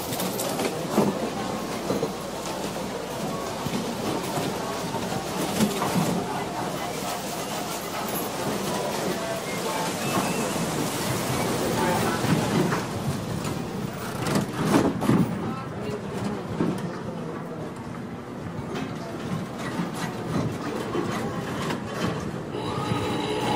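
Casino floor ambience: a steady din of many people talking at once, mixed with slot-machine clatter and scattered short clicks.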